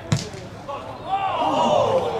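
A football struck hard in a shot at goal: one sharp thud just after the start. Several voices then shout out together in reaction.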